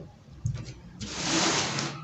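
Large sheet of pattern paper being slid and shifted across a table, a rustle lasting nearly a second, with a soft bump shortly before it.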